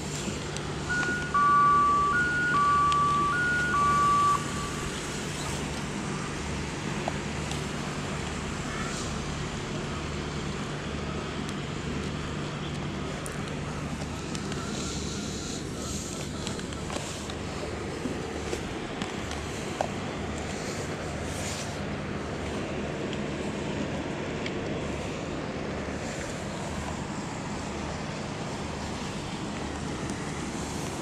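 Steady background of town road traffic with a low hum. About a second in, a loud two-tone horn sounds three times, alternating a higher and a lower note, then stops.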